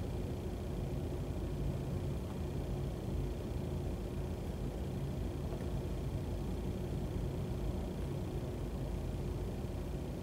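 Steady room tone: a constant low rumble and hum with a faint steady tone over it, with no events standing out.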